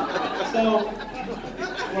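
Speech: people talking in a hall, a murmur of audience chatter, with a man starting to speak again near the end.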